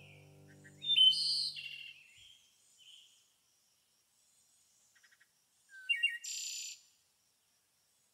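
Recorded birdsong from a bird-ambience sound effect: a burst of chirps about a second in, a few fainter calls, then another short chirping call around six seconds in. Soft music dies away during the first two seconds.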